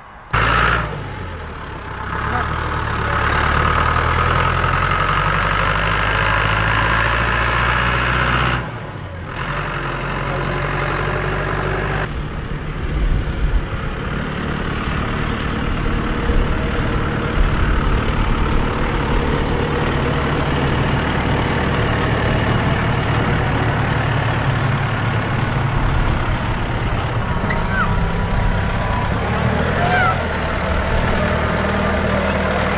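A John Deere tractor's diesel engine running steadily under load as it hauls a loaded dump trailer across the field. The engine sound drops out briefly about nine seconds in.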